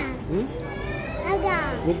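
A young child's high voice calling out, its pitch rising and then falling in two cries.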